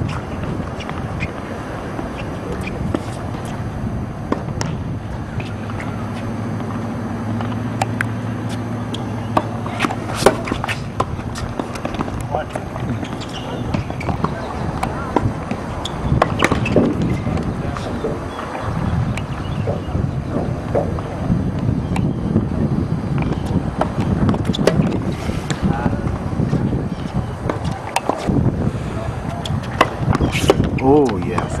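Tennis balls struck by rackets in a doubles rally: scattered sharp pops over a steady outdoor background, with indistinct voices mixed in.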